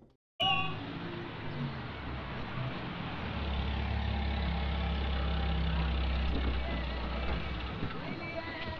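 Street ambience with a crowd murmuring, a brief high cry just after the start, and a steady low vehicle hum from about three seconds in until shortly before the end.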